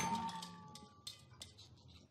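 The tail of a heap of plastic toys tumbling onto a floor: the crash dies away with a thin fading cry, then a few light plastic clicks as the pile settles, before near silence.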